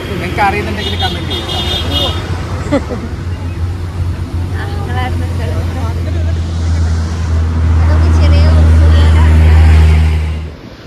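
A road vehicle's engine running close by, a steady low drone that grows louder about three-quarters of the way in, as a vehicle on the mountain road draws near. Voices talk over it.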